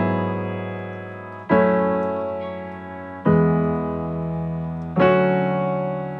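Nord Electro stage keyboard playing slow chords in a piano sound, a new chord struck about every second and three-quarters, each one ringing and fading before the next.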